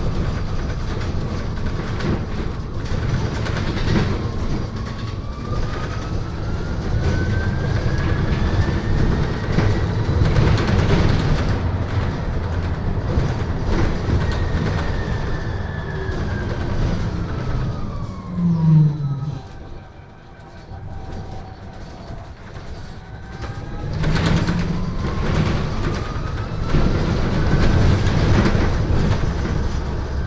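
Electric drive whine of a MAN Lion's City Hybrid bus heard from inside, over road rumble and rattling. The whine rises in pitch as the bus speeds up and falls as it slows, with a short louder low sound just before the bus goes quiet at its slowest, about two-thirds of the way in. Near the end the whine rises again as the bus picks up speed.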